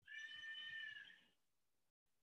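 A faint, drawn-out animal cry with a clear pitch, lasting just over a second before fading away.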